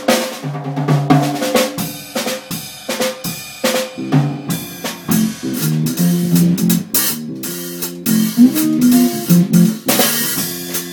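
Small jazz combo playing live: a drum kit breaks with snare and bass-drum hits, punctuated by short stabs from the archtop guitar and bass. About halfway through, the amplified archtop guitar and the bass come back in with a continuous line over the drums.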